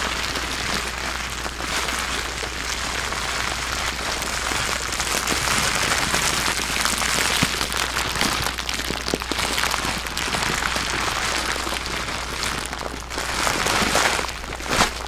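Clear plastic bag of individually wrapped candies being squeezed and kneaded by hand, giving a continuous dense crinkling and crackling of plastic.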